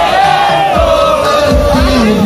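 A crowd of young men shouting and cheering together, many voices joined in one long held cry, over a low repeating drumbeat.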